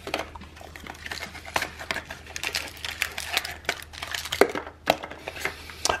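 Small wrapped candy being handled and pulled from a cardboard advent calendar door, its plastic wrapper crinkling: a run of irregular small crackles and taps.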